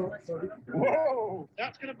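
Voices speaking in short bursts, with one drawn-out vocal sound rising and falling in pitch about a second in.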